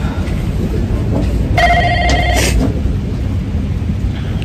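A short warbling electronic ring, a telephone-like tone just under a second long, about one and a half seconds in. Under it runs a steady low rumble.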